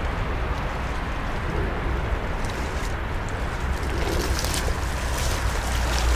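Wind rumbling steadily on the microphone, with water splashing that starts faintly and grows busy about two-thirds of the way in, as a hooked smallmouth bass thrashes at the surface close to the bank.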